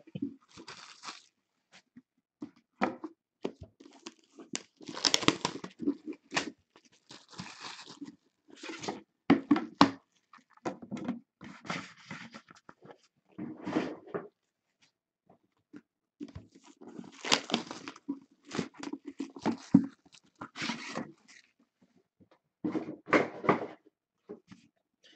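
Clear plastic wrapping rustling and crinkling in irregular bursts as cardboard card boxes are handled, with occasional light knocks as the boxes are set down and stacked.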